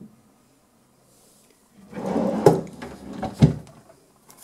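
Wooden desk drawer being slid along its runners and pushed shut, about two seconds in, with a knock as it moves and a louder knock as it closes.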